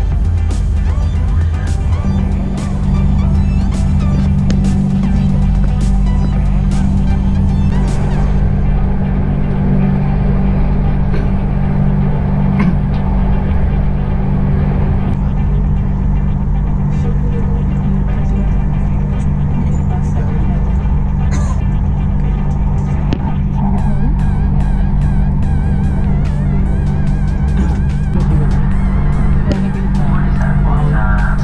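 Airport Rail Link train running, heard from inside the carriage: a steady low hum and rumble with repeated short clicks.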